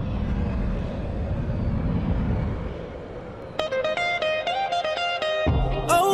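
A low rumbling noise, then, about three and a half seconds in, music starts: a plucked guitar riff in short repeated notes, with a bass coming in near the end.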